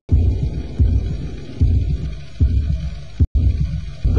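A low pulse repeating about once every 0.8 seconds over a steady low hum, part of a film soundtrack. The sound drops out for an instant at the very start and again a little after three seconds in.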